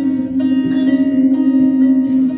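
Live band music: an electric guitar and an electronic keyboard playing sustained, steady notes in an instrumental passage.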